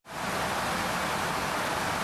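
Steady static hiss, an even rush of noise that starts abruptly: an edited-in glitch transition effect.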